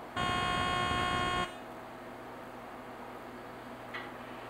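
An electronic buzzer sounds once, a steady harsh tone about a second and a quarter long that starts and cuts off abruptly. A faint click follows near the end.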